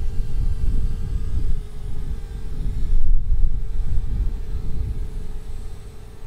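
A DJI Spark quadcopter's steady propeller hum, under a louder irregular low rumble.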